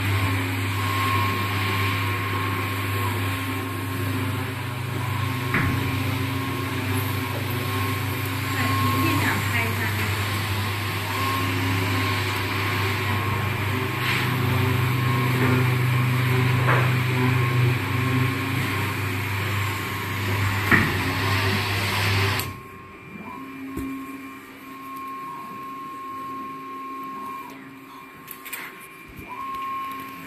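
Single-pass digital inkjet cardboard printer running: a loud, steady machine hum with a rushing noise from its conveyor belt and fans, which cuts off suddenly about two-thirds of the way through, leaving a faint hum and a thin steady tone.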